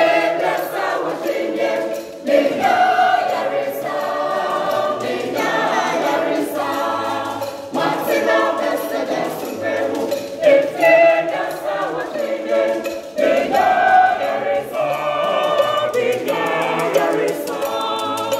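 Junior church choir of girls and boys singing a hymn together in phrases, with short breaks between lines about every five seconds.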